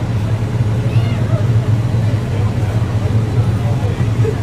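A steady low rumble runs throughout, with faint chatter of people's voices above it.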